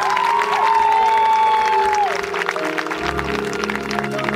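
A marching band holds a sustained chord while the audience applauds and calls out over it. Low bass notes come in about three seconds in.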